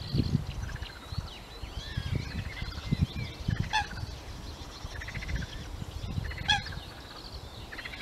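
Eurasian coots calling: a stream of thin, high peeps with two sharper, louder calls about three and a half and six and a half seconds in, over an irregular low rumble.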